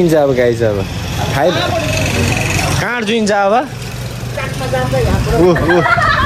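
People talking, with a steady low rumble underneath, most noticeable in the gaps between words.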